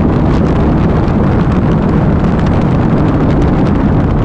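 Steady wind rush on the microphone of a BMW K1200R Sport motorcycle cruising at road speed, with the bike's inline-four engine running evenly underneath.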